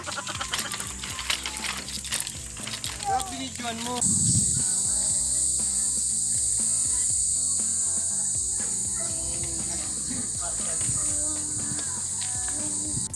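Steady high-pitched insect buzzing that starts suddenly about four seconds in and holds, over quiet background music.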